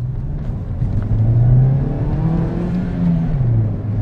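Ford Ka+ 1.2-litre four-cylinder petrol engine heard from inside the cabin, pulling away from a standstill with its throttle controller in race mode. The revs climb, drop at an upshift a little past three seconds in, then hold steady as the car pulls on.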